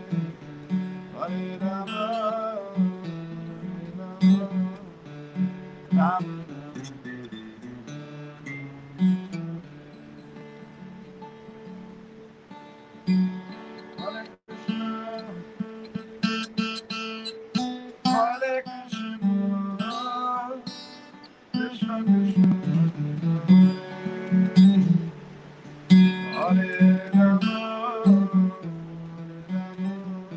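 Acoustic guitar played solo, picked notes over a steady bass line, growing softer through the middle and fuller and louder again in the last third.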